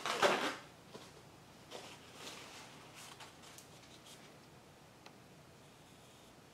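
Handling noise: a brief rustle in the first half second, then faint scattered ticks and rustles as a gloved hand works at a wet acrylic painting on a plastic-covered table.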